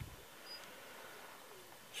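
Quiet background with a faint, distant bird call.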